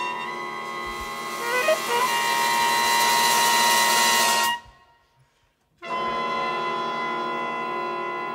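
Big band brass and reeds holding a sustained chord that swells louder, then cuts off sharply about four and a half seconds in. After a second of silence the ensemble comes back in on another held chord.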